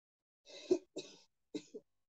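A person coughing three times in quick succession, the first cough the loudest.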